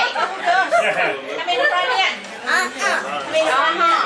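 Several people chattering and talking over one another, with no single voice standing out.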